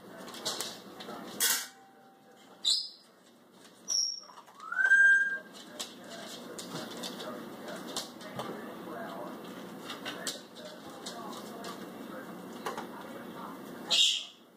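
Dog chewing and crunching dry kibble picked up off a tile floor, with small clicks of pellets on the tiles. In the first few seconds several short high squeaky chirps sound, one louder rising then held about five seconds in, and a sharp clatter comes at the very end.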